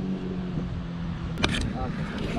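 A steady low motor hum, drifting slightly down in pitch, fades out about one and a half seconds in. A sharp click comes at the same moment, followed by brief handling noise.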